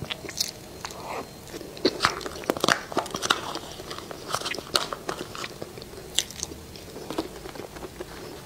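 Close-miked eating: a person biting and chewing food, with irregular sharp crunchy clicks throughout.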